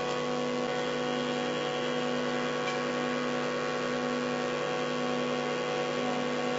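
Steady instrumental drone holding one pitch with its overtones, unchanging throughout, with no singing or percussion over it.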